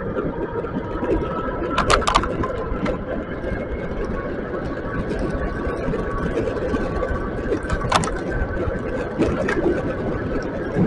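Steady riding noise from an electric bike on a wet road: rumble of wind and tyres, with a faint steady whine from the Bafang BBSHD mid-drive motor. A few sharp clicks come around two seconds in and again near eight seconds.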